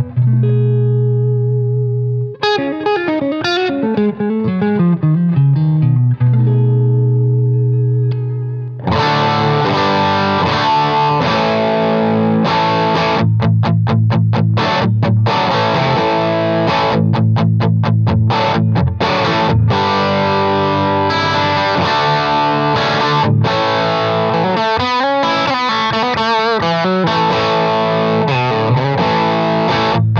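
Electric guitar (Novo Serus J) played through overdrive and fuzz pedals into a Hiwatt amp: held low notes and a descending run of single notes, then from about nine seconds in a thick, heavily distorted riff with short stops between phrases.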